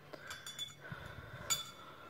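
Faint clinks of a steel spoon against a stainless steel cup as it is lifted out, with one sharper clink about one and a half seconds in.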